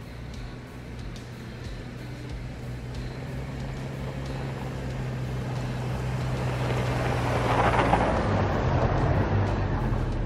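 SUV driving along a snow-packed driveway toward the microphone. Its engine and tyres grow steadily louder as it approaches and are loudest as it passes close, about eight seconds in.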